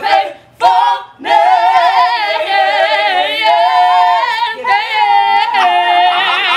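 A small group singing a gospel song a cappella, women's voices leading, holding long notes with vibrato after a couple of short breath breaks near the start.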